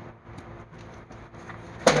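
Faint, sparse ticks of hands handling wiring and plastic connectors on the quad's harness over low background noise; near the end a man says "yep".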